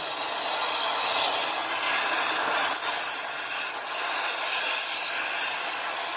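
Oxy-fuel gas torch flame hissing steadily while it heats a bolted steel pivot bracket.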